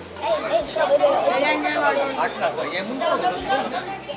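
Chatter: several children's voices talking over one another.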